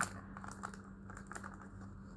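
Light handling sounds at a table: a few soft, scattered clicks and rustles, over a steady low hum.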